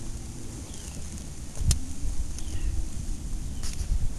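Low wind rumble on the microphone, with a single sharp knock about two-thirds of the way through.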